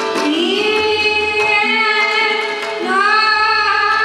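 Female Hindustani classical vocal: a long sung note that slides up and is held, then a second rising glide about three seconds in. It runs over a steady drone, with tabla accompaniment.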